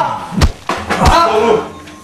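A few heavy thumps in the first second or so, mixed with a person's voice calling out.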